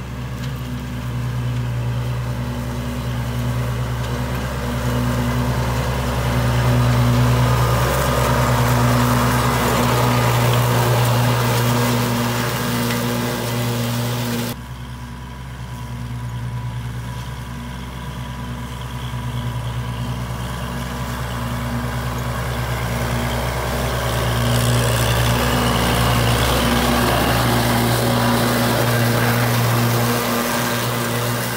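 Kubota L2501 tractor's three-cylinder diesel engine running steadily under load while driving a rear finishing mower; the engine has had its fuel and timing turned up. About halfway through the sound drops suddenly, then grows louder as the tractor comes closer.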